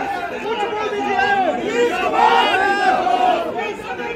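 A crowd of people shouting and talking over one another, with many raised voices at once.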